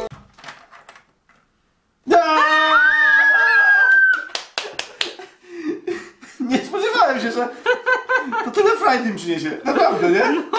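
People laughing together around a table. A drawn-out high-pitched sound starts suddenly about two seconds in, rises, holds for a couple of seconds, then gives way to the laughter. Just before it there is about a second of dead silence.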